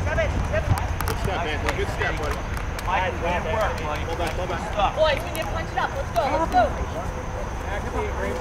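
Unintelligible shouts and calls of several voices from around a youth soccer field, short overlapping cries throughout, over a steady low rumble.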